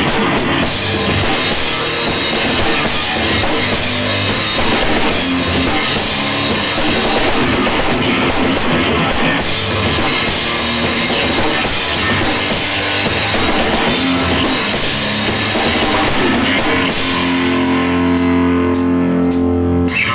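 A bass-and-drums duo playing loud progressive rock live: a drum kit driven hard with constant cymbal wash, under an electric bass. In the last few seconds the cymbals drop back and long held bass notes ring out.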